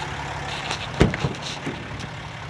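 A pickup truck's rear door latch clunks open about a second in, followed by two lighter knocks, over a steady low hum.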